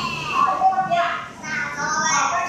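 Children's voices and an adult's voice in a classroom, talking and playing, heard as playback of a video through room loudspeakers.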